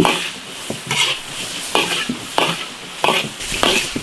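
Metal ladle scraping and tossing shredded pork and vegetables around a large iron wok, about six strokes in four seconds, over steady sizzling: a fast stir-fry on high heat.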